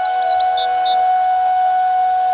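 Background music: a flute holding one long, steady note, with a few brief high chirps in the first second.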